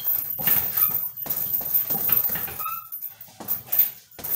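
Gloved punches landing on a hanging heavy punching bag in a quick, uneven run of thuds, the bag's hanging chain jingling. A short high squeal sounds near the end.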